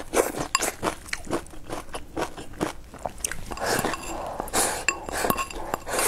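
Close-up eating sounds: crunching and chewing of a mouthful of stir-fried vegetables and rice, with irregular sharp clicks of chopsticks against a ceramic bowl, some of them ringing briefly.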